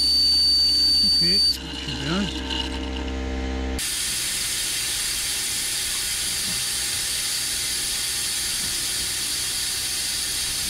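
Vacuum brake bleeder running. For about the first second and a half there is a steady high whistle over a low hum as it sucks brake fluid out of the reservoir, then the whistle stops. From about four seconds in there is a steady hiss as it draws fluid through the bleed hose at the caliper.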